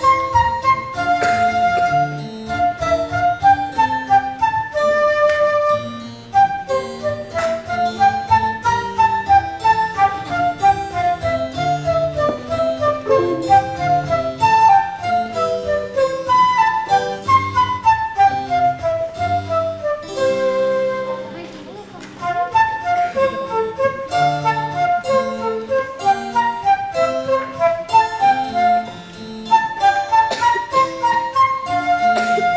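Concert flute and electronic keyboard playing a Baroque court dance together: a quick running flute melody over keyboard accompaniment, with brief breaks between phrases.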